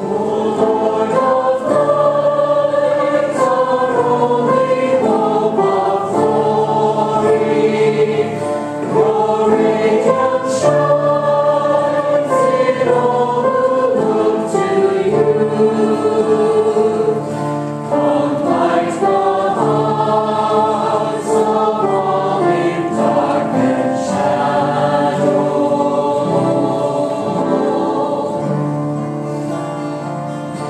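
Church choir singing a hymn, with sustained, slowly moving melodic lines over held low notes.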